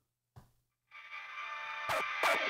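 Sample playback from a Boss SP-303 sampler, triggered over MIDI by a pattern on an SP-404 mk2. After near silence and a brief click, a sustained pitched musical sound fades in about a second in and keeps growing louder.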